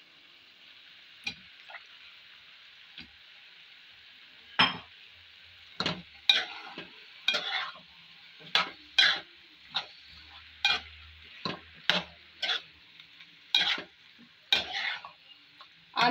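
Faint steady sizzle of spinach and masala cooking in the kadai. From about four seconds in, a metal spoon scrapes and knocks against the metal pan in a run of quick separate strokes, roughly one or two a second, as potato cubes are stirred into the spinach.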